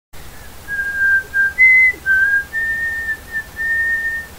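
A whistled tune: a run of single held notes, with one higher note about one and a half seconds in.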